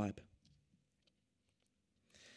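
A man's voice trails off at the end of a sentence, then a near-silent pause in which a few faint clicks are heard.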